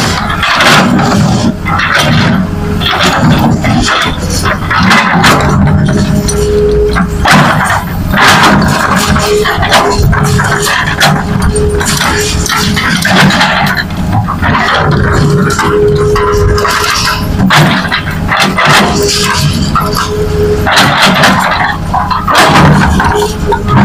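Hitachi crawler excavator's diesel engine working under load as it digs and swings its bucket. The engine note rises and falls every second or two, and a hydraulic whine comes in and out in stretches of one to three seconds.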